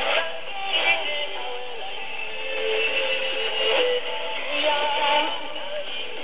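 A song with a singing voice, coming from the PBS Xizang shortwave broadcast on 6025 kHz and heard through a receiver in AM mode.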